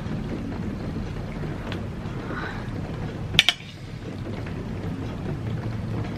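Two quick clinks of metal cutlery against a ceramic plate about three and a half seconds in, over a steady low background rumble.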